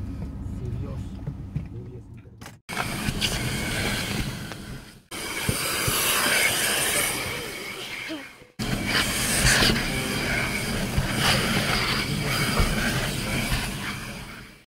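Handheld vacuum cleaner running while a car's interior is vacuumed, heard as a steady loud rush in several short stretches that cut off abruptly and start again. Before that comes a quieter stretch of low rumbling outdoor noise.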